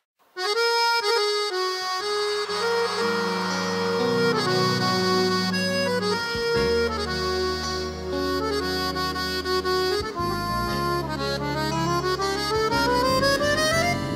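Accordion playing piseiro music without vocals. It starts just after a brief silence, and in the last few seconds it climbs in a rising run.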